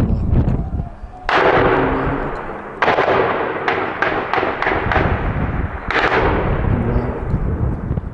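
Heavy weapons fire from tanks and machine guns, echoing across a town. A low rumble comes in the first second. Loud reports follow about a second in, near three seconds and near six seconds, each with a long rolling echo, and a run of quicker shots comes between them.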